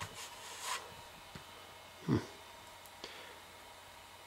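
Fostex D1624 hard-disk recorder running with its cooling fan removed: only a faint steady hum and whine from the unit. A brief rustle at the start, a short noise about two seconds in and a click about three seconds in sound over it.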